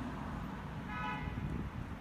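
Steady low rumble of outdoor traffic, with a short, faint car-horn toot about a second in.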